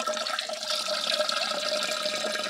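Gasoline draining in a thin steady stream from a motorcycle carburetor's float bowl drain into a coffee mug, trickling and splashing like a tap running. The bowl is being emptied to check the fuel for debris.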